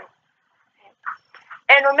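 Speech that breaks off for about a second and a half, with only a few faint short sounds in the gap, then resumes near the end.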